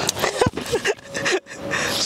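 A woman sobbing: breathy, broken crying sounds with short whimpering catches in the voice.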